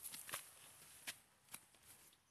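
Near silence with faint rustling and three soft clicks spread across it, the sound of someone moving among garden plants.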